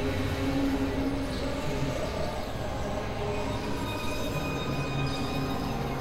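Dense experimental sound collage of several overlapping tracks: a steady wash of sustained tones over a rumbling, noisy low end, with a train-like mechanical character and no clear beat.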